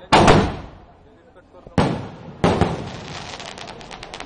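A multi-shot aerial firework cake firing: two loud bangs in quick succession at the start, another bang just under two seconds in, and a third about half a second later that trails into a rapid run of small crackles as the burst's stars fall.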